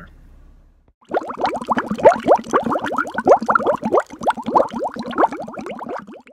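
Bubbling water sound effect: a dense, rapid stream of rising bloops and plops, starting about a second in.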